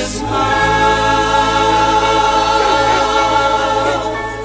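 A choir singing in gospel-style music, moving to a new chord just after the start and holding it.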